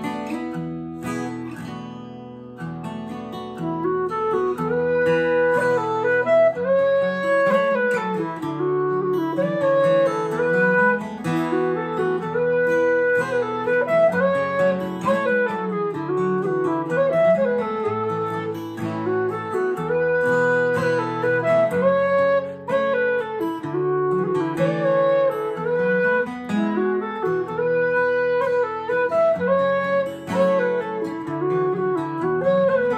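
A low whistle playing a tune over a strummed acoustic guitar accompaniment. The guitar plays alone at first, and the whistle comes in about three to four seconds in, making the music louder.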